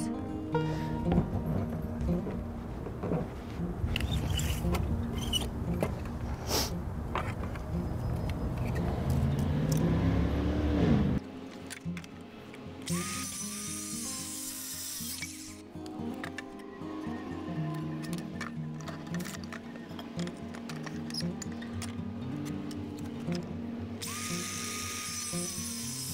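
A circular saw makes two short crosscuts through a wooden board, each about two and a half seconds long: the motor whines up, the blade hisses through the wood, then it winds down. Background music plays throughout.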